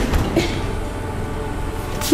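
Steady background noise, a low hum under an even hiss, with no distinct event.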